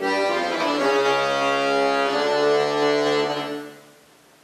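Chromatic button accordion playing a quick run of notes that settles into held chords. The last chord dies away shortly before the end.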